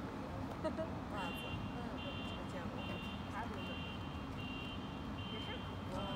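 Repeating electronic beeping, short high beeps a little faster than once a second, starting about a second in, over a steady background of street noise.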